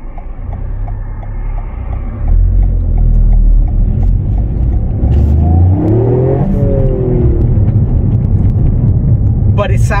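Toyota GR Yaris's turbocharged 1.6-litre three-cylinder engine, heard from inside the cabin, pulling under throttle. It gets much louder about two seconds in, and the revs climb and then fall away a few seconds later.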